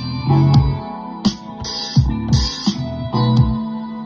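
Hip hop beat playing back from an Akai MPC 500 sampler, its percussion track sounding. Deep kick drums drop in pitch under sharp drum hits and bright cymbal or hi-hat strikes, over sustained melodic notes.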